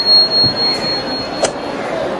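A high, steady electronic tone like a struck tuning fork, starting with a click and held for almost two seconds before fading. It is the sound effect of a subscribe-button animation. A sharp knock comes about a second and a half in, over steady background noise.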